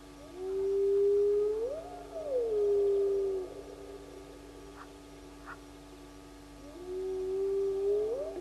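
An animal calling: one long held note that swoops up and falls back in the middle before settling again, lasting about three seconds. A second call of the same shape begins near the end.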